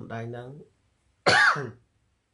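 A man coughs once, loudly, a little over a second in; the cough is short and dies away within half a second.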